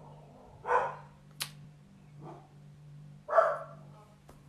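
Pet dogs barking in the house as an alert: the dogs serve as the doorbell. There are two loud barks, about a second in and near the end, with a fainter one between.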